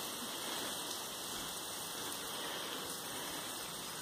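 Steady, even hiss of outdoor background noise, with no distinct sound standing out.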